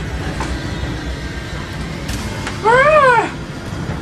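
A gagged woman's muffled cry through tape over her mouth: one loud wail, rising then falling and lasting under a second, about two and a half seconds in, over a low steady rumble.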